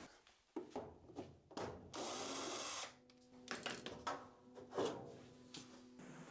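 Faint handling clicks of tools and wire at an open furnace, with a steady burst of about a second from a cordless drill about two seconds in, then a faint steady hum.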